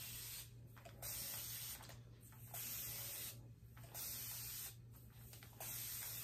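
Hand-held spray bottle misting hair: about five hissing sprays of roughly a second each, with short pauses between.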